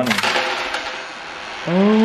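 Loose coins clattering and sliding inside a small steel safe and spilling out, a dense burst at the start that trails off over about a second and a half.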